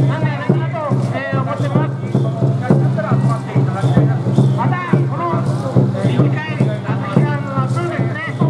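A crowd of people talking and calling out together, many voices overlapping, over a steady low hum, with scattered short knocks.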